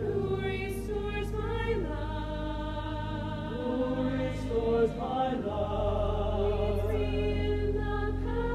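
A mixed choir of men and women singing a slow choral anthem in long held notes. Low steady bass notes sound underneath and change to a new pitch about halfway through.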